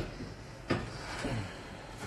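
A single sharp knock about two-thirds of a second in, among faint kitchen handling noise, as a round cake tin is eased into an open oven.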